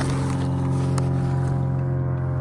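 A motor running steadily at one unchanging pitch, a continuous mechanical hum.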